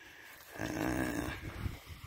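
A man's long, low 'uhh' of hesitation, lasting about a second.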